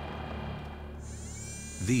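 Sound-designed whirr of a Mars rover's motors: a steady low hum, joined about a second in by a high electric whine that glides up and then holds steady.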